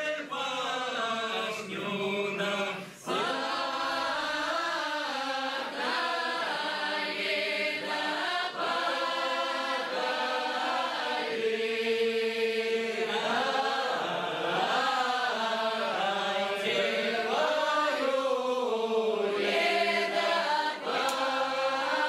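A mixed group of men and women singing an unaccompanied Upper Don Cossack round-dance (khorovod) song in several voices, with a short break between phrases about three seconds in.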